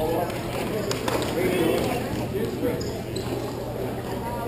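Players' indistinct voices during a hockey game, with a few sharp clacks of sticks and puck about a second in.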